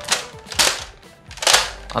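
Plastic Nerf blaster being handled: three short bursts of rapid clicking and rattling from its plastic parts.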